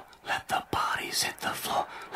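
Indistinct, breathy, whisper-like talking in quick syllables, most likely a TV match commentator's voice.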